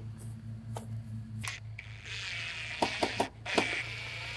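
Footsteps and light knocks of handling around a wooden 2x4 fence rail, over a steady low hum; about two seconds in a steady high hiss sets in, broken briefly a second later, with a few more sharp clicks.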